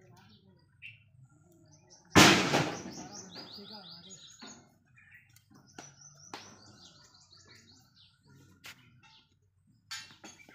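A bird singing runs of quick repeated high notes. A loud rush of noise comes about two seconds in and fades over a second or two, and there are a few sharp clicks.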